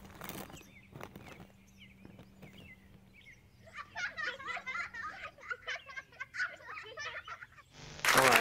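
Plastic chocolate wrapper crinkling as it is opened, then birds chirping busily from about halfway through.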